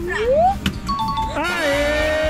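A voice calls out with a rising pitch. About a second in, a short two-note chime sounds, and background music starts.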